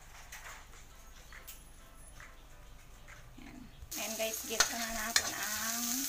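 Chopped onion, garlic and ginger sizzling in hot cooking oil in a metal wok, stirred with a metal spatula that clinks and scrapes against the pan. The sizzling starts suddenly about four seconds in, after a quiet stretch.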